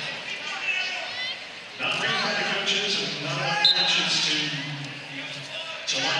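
Men's voices shouting in an arena, as coaches and fans call out during a wrestling bout. A brief high tone sounds about halfway through, in the manner of a referee's whistle restarting wrestling from the down position.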